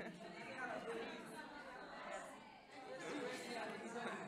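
Indistinct chatter of several young people talking at once, with no single clear voice.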